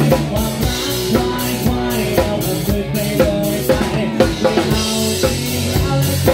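A live band playing, heard from right behind the drum kit: close, loud drums with kick, snare and cymbals over sustained bass and guitar notes.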